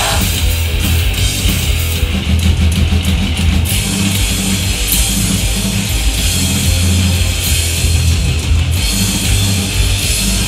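A hardcore punk band playing live and loud: distorted electric guitar, bass guitar and drum kit with crashing cymbals, with a heavy low end.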